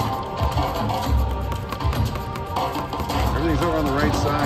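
Rhino Charge video slot machine playing its free-games music while the reels spin game after game, with a low beat pulsing about once a second and short chiming tones over it.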